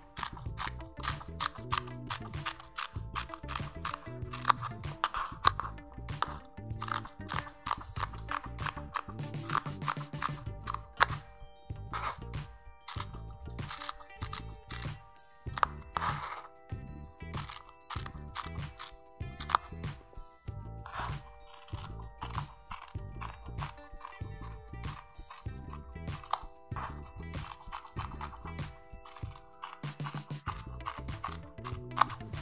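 Background music with a steady beat, over the repeated crunching snips of scissors cutting through soft twill fabric.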